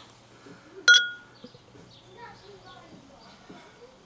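A single sharp glass clink about a second in, with a brief ringing tone, as the glass beer bottle knocks against the pint glass. Faint handling sounds follow.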